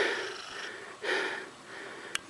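A man's breathing close to the microphone: two breaths, at the start and about a second in, over a faint steady hiss.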